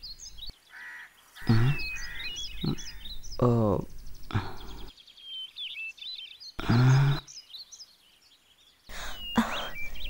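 Small birds chirping again and again, with several short wordless voice sounds from a person in between. The sound almost drops out for a second or so before the end.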